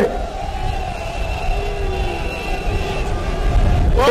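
Low, fluctuating rumble of outdoor background noise with a faint steady hum above it.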